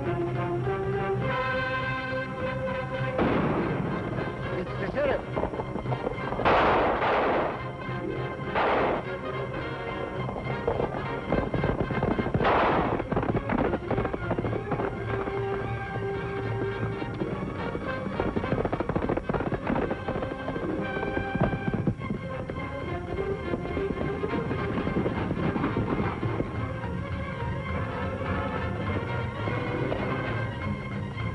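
Orchestral chase music over gunfire, with a few shots about 3, 7, 9 and 13 seconds in, and the hoofbeats of galloping horses.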